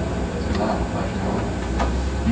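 Steady low rumble of room background noise, with faint speech about half a second in and a brief click near the end.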